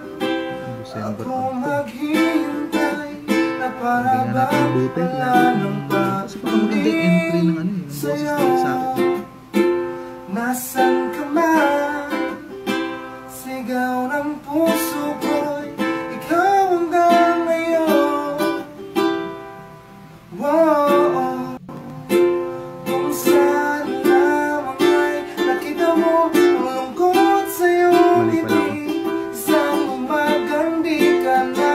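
A man singing an acoustic pop cover while strumming a ukulele, his voice carrying the melody over steady rhythmic strums.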